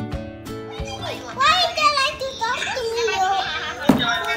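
Guitar music dies away in the first second, then a young child's high voice chatters with wide swings in pitch and no clear words. A sharp click comes just before the end.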